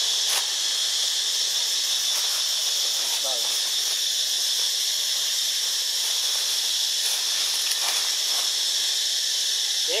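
Steady, high-pitched drone of forest insects. A short falling call sounds about three seconds in, and a short rising call near the end.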